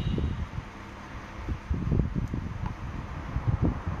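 Low, uneven rumble of air buffeting the microphone, coming and going in gusts.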